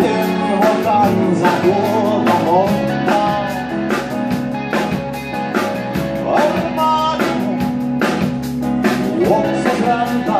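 Rock band playing live: acoustic and electric guitars, bass and a drum kit keeping a steady beat, with a male lead vocal.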